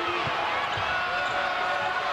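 Basketball being dribbled on a hardwood court over steady arena crowd noise.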